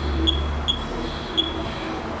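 Short high-pitched electronic beeps, four at uneven intervals, from equipment in the room. A low hum sounds under them for about the first second.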